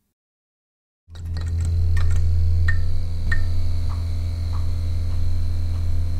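Neon-sign buzz sound effect: a steady low electrical hum starts suddenly about a second in, with a faint high whine over it. A few short pings step down in pitch during the first seconds of the hum.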